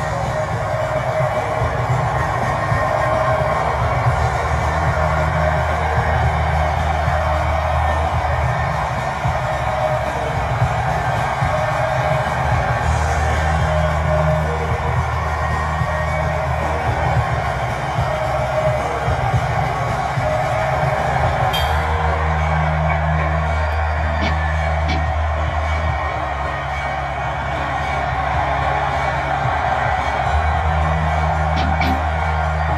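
A band's music in a rehearsal room: long held bass notes that shift every few seconds under a steady mid-range layer, with no clear drumbeat.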